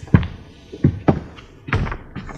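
Footsteps thudding on a stage floor: four dull thumps at uneven intervals, the loudest near the end.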